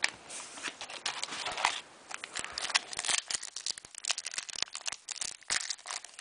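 Foil wrapper of a trading-card pack crinkling and tearing as it is opened by hand, with a few scattered rustles at first, then a dense run of crackles from about two seconds in.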